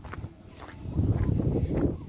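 Low, irregular rumble of noise on a handheld phone's microphone during a walk, swelling about a second in.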